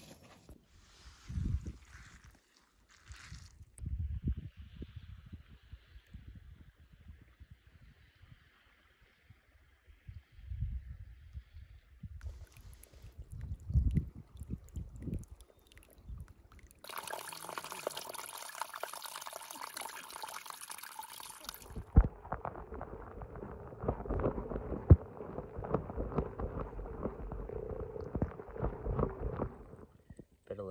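A small mountain creek running and trickling over rocks, loudest for about five seconds just past the middle. After that comes lower splashing and sloshing of shallow water as a caught trout is handled in it.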